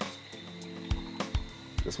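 Background music with steady held notes and a few soft low beats.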